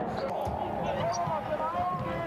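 Basketball arena court sound: a ball being dribbled up the floor over a steady hum of crowd noise, with faint voices rising and falling.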